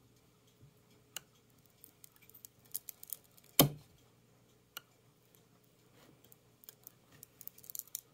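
Bars of soap being handled and set on a plastic soap-cutter base: scattered light clicks and taps, with one louder knock about three and a half seconds in as a bar is set down.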